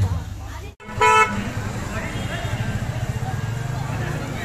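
A vehicle horn gives one short beep about a second in, right after a brief drop-out in the sound, over steady background crowd noise.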